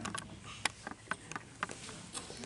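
Light, irregular clicks and knocks, about ten in two seconds, as the camera is picked up and moved: handling noise on the recording device.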